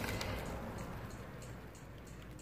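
Faint crinkling of thin plastic produce bags, fading away, with a few light ticks.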